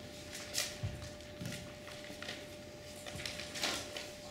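Paper rustling and crinkling as a folded note is opened by hand, a few soft crackles in an otherwise quiet room, with a faint steady hum underneath.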